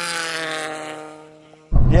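Heavily tuned Nissan Silvia S15 2.2-litre four-cylinder engine at full throttle as the car passes at speed: one steady engine note that swells and then fades, its pitch dropping slightly.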